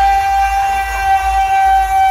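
DJ sound system playing one long, steady, horn-like note over heavy bass.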